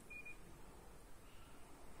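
Near silence: room tone, with one short, faint high beep just after the start.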